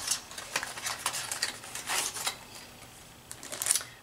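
Small paperboard product box being opened by hand: light scraping and a quick run of small clicks as the flap is worked open, thinning out after about two seconds, with a few faint clicks near the end as the bottle comes out.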